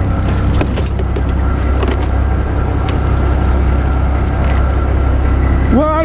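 Fishing boat's engine running steadily with a low drone, with a few light clicks over it.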